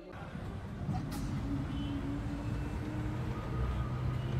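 A bus engine running, heard from inside the passenger cabin: a steady low drone with rumble, a sharp click about a second in, and the engine note settling lower near the end.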